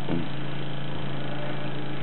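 Electric gasoline fuel pump running on a test bench, giving a steady, even hum with a strong low tone.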